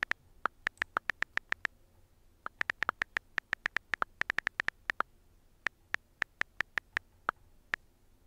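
iPhone on-screen keyboard key clicks as a sentence is typed: about forty short, crisp clicks in quick runs, some a little lower in pitch than the rest. There are brief pauses about two seconds in and about five seconds in, and the clicks thin out toward the end.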